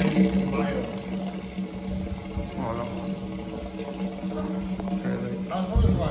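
A steady low hum, with a few brief voices.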